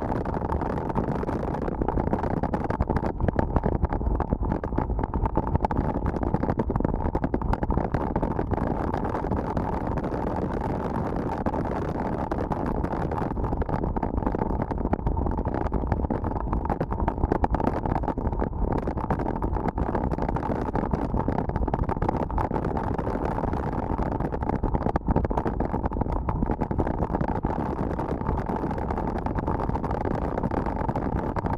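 Steady rushing of wind over an action camera's microphone on a mountain bike ridden fast, mixed with the rumble of knobby tyres rolling over a gravel dirt road.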